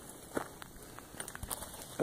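A few faint footsteps and scuffs on dry, sparsely grassed dirt.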